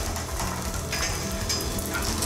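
Concrete column specimen crackling and crumbling as it fails under load in a testing frame, chunks breaking away and falling, heard as a dense run of small cracks. Background music runs underneath.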